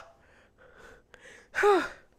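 A woman's wordless vocal reaction: faint breaths, then about one and a half seconds in a single short exclamation that falls in pitch.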